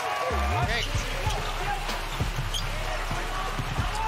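A basketball bouncing on a hardwood court, several irregular thuds, over arena ambience with a low steady hum.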